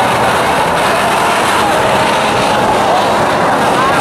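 A Lao flower firework (bang fai dok) set on the ground, spraying a fountain of sparks with a steady, loud rushing hiss. People's voices call out over it.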